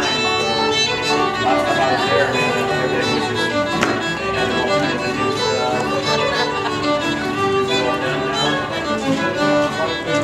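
A fiddle playing a tune with a small acoustic band, the music running steadily.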